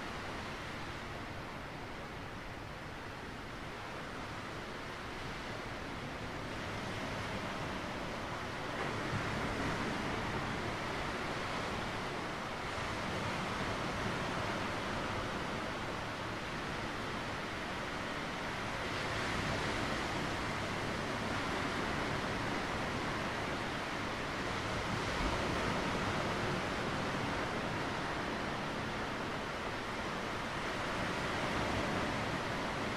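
Sea surf washing over a rocky shoreline: a steady hiss of water that swells and eases several times as waves come in.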